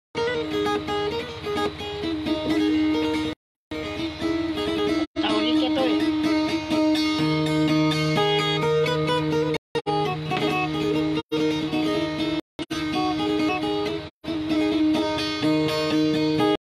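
Guitar played solo, plucked, with long held notes ringing. The sound cuts out abruptly to silence for a moment several times.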